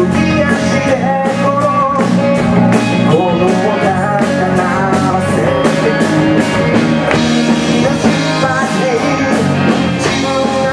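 Live rock band playing a song: distorted electric guitars, bass guitar and a drum kit with regular drum and cymbal hits, and a male voice singing through the PA.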